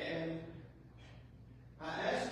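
A man's voice: a short, breathy vocal sound at the start, a quiet lull, then speech starting again near the end.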